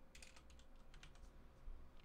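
Faint typing on a computer keyboard: scattered soft key clicks, barely above room tone.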